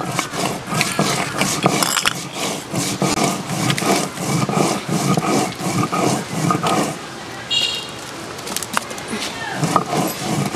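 Stone roller grinding cumin seeds on a flat stone slab (shil-nora), rough gritty strokes back and forth about three times a second, easing off about seven seconds in.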